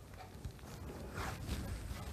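Faint rustle of cotton fabric being handled and slid across a cloth-covered table, swelling about a second in.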